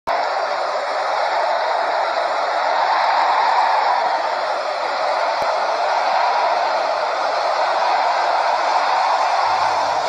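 A steady, loud rushing hiss without pitch or rhythm, with a single click about halfway through.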